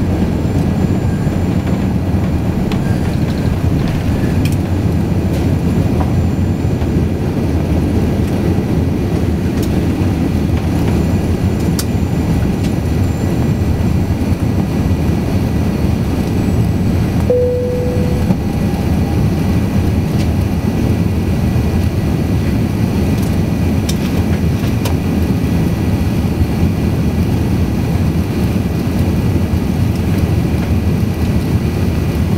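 Steady, loud jet engine and airflow noise heard inside the cabin of an Airbus A380-800 as it lifts off and climbs. A short tone sounds once, a little past halfway.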